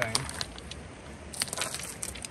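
River cobbles and gravel clacking and crunching as a hand digs and shifts stones on a creek gravel bar, a few separate knocks with a short cluster of clicks about one and a half seconds in.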